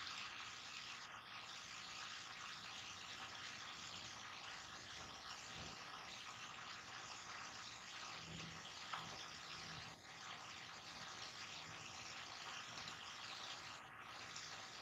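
Faint, steady hiss of background noise over a call's microphone line, with no other distinct sound.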